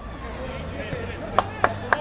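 Faint shouting voices from the pitch over a steady outdoor background, with three sharp clicks in quick succession near the end.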